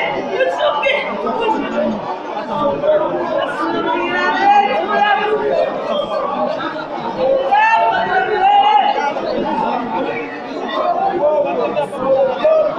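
A congregation praying aloud at once, many voices overlapping without a single leading voice.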